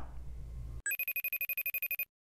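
Telephone ringing sound effect for an outgoing call: a rapid electronic trill, about fourteen pulses a second, starting about a second in after faint room tone.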